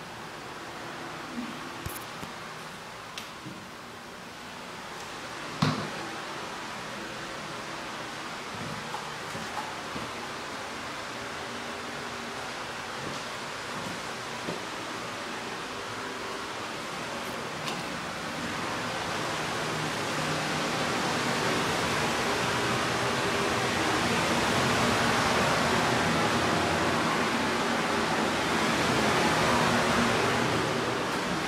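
Steady rushing noise that grows louder through the second half, with a few light knocks and one sharper knock about six seconds in.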